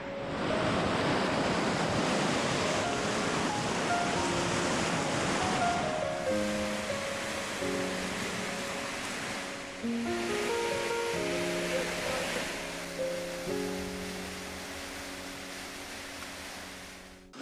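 Fast-flowing river rapids, a steady rush of water that comes in suddenly at the start, under background music of slow, held notes.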